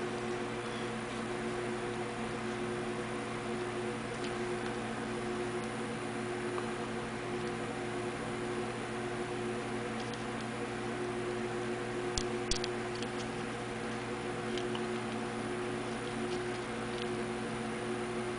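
A steady machine hum made of several held tones, with a few faint small clicks about twelve seconds in as fingers handle small pieces of painted dryer-vent tubing.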